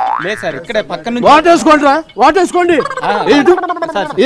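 Men talking loudly, almost without pause. In the first half second a short rising 'boing'-like comic sound effect is laid over the voices.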